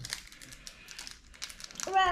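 Foil Pokémon card booster pack crinkling in the hands as it is handled, a quick scatter of crackles.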